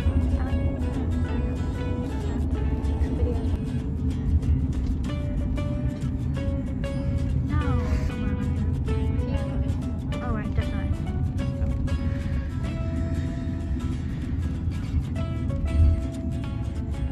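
Background music with a steady beat and a singing voice, over the low road rumble of a car cabin.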